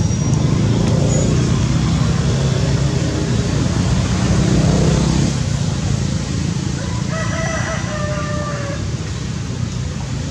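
A loud, steady low rumble of background noise, with a drawn-out pitched call lasting about a second and a half, about seven seconds in.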